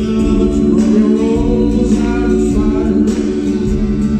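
Live pop band music with several voices singing together over the band.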